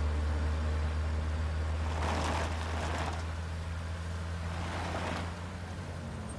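A car driving, its engine running with a steady low drone, with swells of rushing noise about two and three seconds in and again near five seconds.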